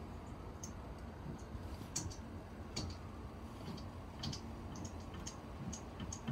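Faint, irregular light clicks and ticks from Wilesco model steam engines being tried by hand, not yet running under steam, over a low steady hum.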